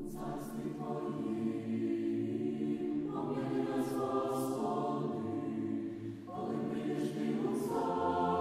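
A choir singing slow, sustained chords, with a new phrase starting about three seconds in and a brief breath before another about six seconds in.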